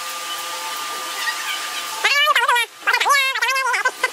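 A steady hiss, then from about two seconds in a voice with a strongly wavering pitch, in two short stretches.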